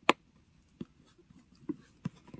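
Metal tweezers tapping on a clear plastic lid while a sticker is pressed down: one sharp click just after the start, then three fainter taps.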